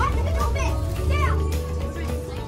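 Background music with a steady bass line, and high children's voices calling out briefly about half a second in.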